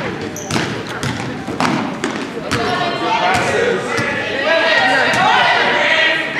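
Basketball being dribbled on a hardwood gym floor, a run of bounces about half a second apart through the first half. Spectators' voices rise in the reverberant gym in the second half.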